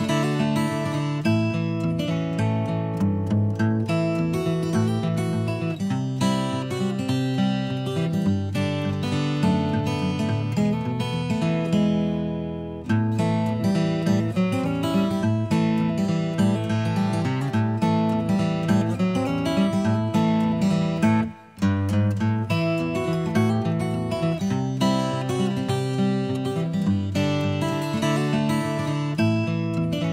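Background music of strummed acoustic guitar, with a steady beat. A chord is held and fades just before the middle, and the music breaks off for an instant about two-thirds of the way in.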